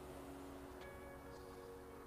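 Faint, soft background music of sustained tones, with a chime-like note struck about a second in and ringing on.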